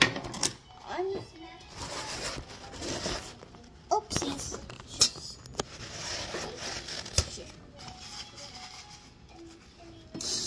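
Plastic lunch boxes and lunch bags being handled on a kitchen bench: a series of sharp knocks, clicks and clatters as containers are picked up and set down, with faint murmurs from a child in between.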